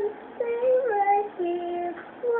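A young woman singing solo and unaccompanied, with a brief break just after the start, then a phrase that steps down in pitch to a long held low note near the end.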